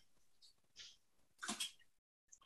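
Faint breath noises from a person at a video-call microphone, then a short, louder breathy burst about one and a half seconds in.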